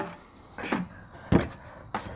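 Three knocks as a fog light and its housing are handled and pulled through a tight opening in a Jeep Wrangler JK's front end. The loudest comes a little after a second in.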